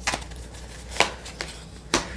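Tarot cards being drawn from the deck and laid down on the table: a few short, sharp snaps and taps of card stock, the clearest about a second in and just before the end.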